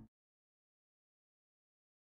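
Near silence: the fading intro music cuts off right at the start, then nothing at all.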